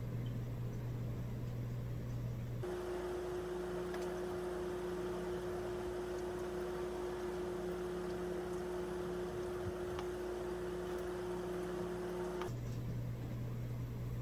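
Steady background hum and hiss with no distinct event. About three seconds in it changes abruptly to a single higher steady tone with more hiss, and near the end it changes back.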